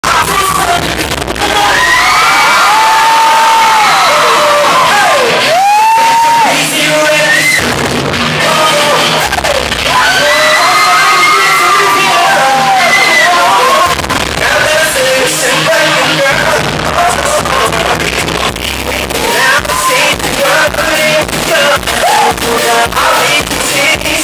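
Live pop concert music in a large hall: a sung melody over backing music, with a cheering crowd. A steady dance beat comes in near the end, at about two beats a second.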